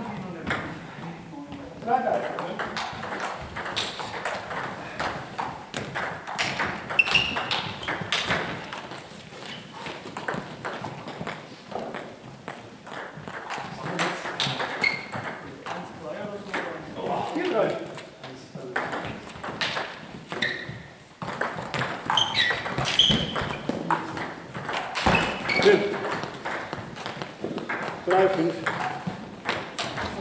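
Celluloid table tennis balls clicking irregularly off tables and bats, with many short knocks throughout, amid players' voices in a hall.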